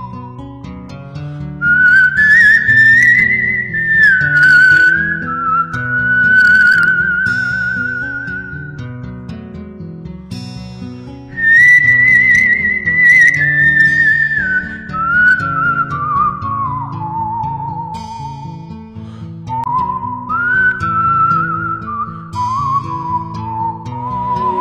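A whistled melody over soft instrumental backing music, made of long held notes with vibrato that step and glide up and down. It is loudest about two seconds in and again about twelve seconds in, and it falls to lower notes near the end.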